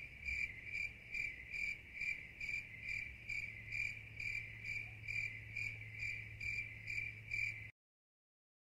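Insect chirping in a steady rhythm, about two and a half chirps a second, over a low steady hum. It starts abruptly and cuts off suddenly near the end.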